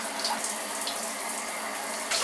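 Shower water running steadily into a bathtub, a continuous even hiss.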